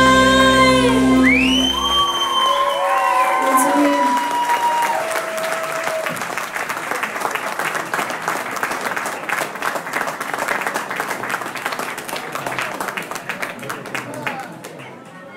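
A live rock band's last held chord with bass and vocals stops about two seconds in, a few notes ring on briefly, then an audience applauds, the clapping fading toward the end.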